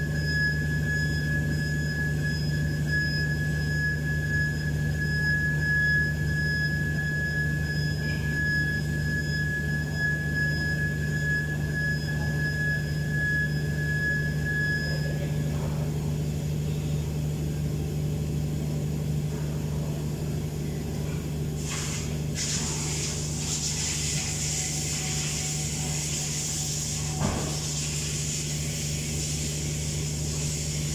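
A steady mechanical hum with a thin high whine over it for about the first half; about two-thirds in, a hiss starts and carries on.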